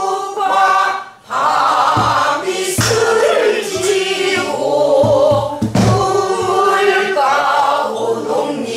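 A group of men's and women's voices singing a Korean new folk song (sinminyo) together, with a few low strokes on sori-buk barrel drums between about two and six seconds in.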